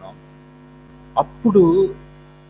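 Steady electrical mains hum in the recording, joined briefly by a man's voice about one and a half seconds in.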